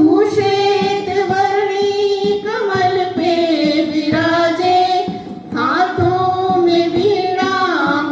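A group of schoolboys singing together into microphones, in long held notes that slide from one pitch to the next, with a brief break about five and a half seconds in.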